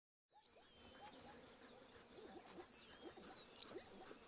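Faint outdoor wildlife ambience with a few thin, gliding bird whistles, coming in about a third of a second after a moment of silence.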